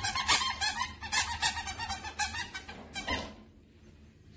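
A rapid run of sharp, high squeaks in quick bursts lasting about three seconds, then stopping abruptly.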